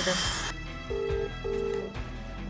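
Telephone ringback tone on speakerphone: a double ring of two short steady beeps about a second in, the dialled number ringing and not yet answered. Street noise is cut off just before it.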